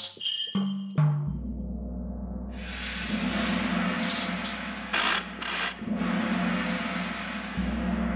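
Orchestral percussion from a software percussion kit in Logic Pro, played from a keyboard: a few short pitched drum notes at the start, then from about a second in a long low rolling rumble under a rising metallic wash, with several sharp hits in the middle.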